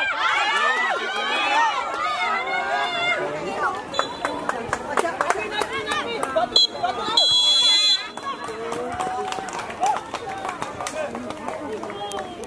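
Children and adults shouting and chattering at a youth football match, with a referee's whistle: a short pip about six and a half seconds in, then a loud, longer blast lasting under a second.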